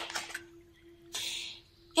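A stiff tarot card sliding across a table and being lifted: a short swish at the start and a longer scrape about a second in, with a faint steady hum underneath.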